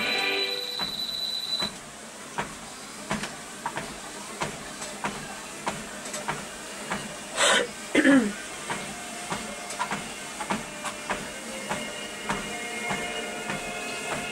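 Footfalls on a treadmill belt at walking pace, a steady beat of soft thumps under the treadmill's running noise. A loud rushing burst and a falling sound come about halfway through. Background music fades out in the first second and returns faintly near the end.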